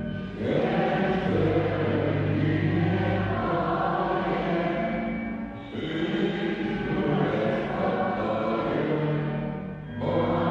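Choral music: a choir singing long held notes in slow phrases of about five seconds each, with a short dip between phrases about halfway through and another near the end.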